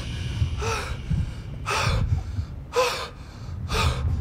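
A man gasping for breath in distress, four sharp voiced gasps about a second apart.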